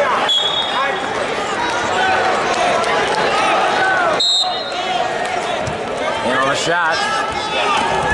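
Spectators and coaches in a gym shouting and talking over one another at a wrestling match, with two short, high whistle blasts from the referee: one just after the start and one about halfway through, at the restart.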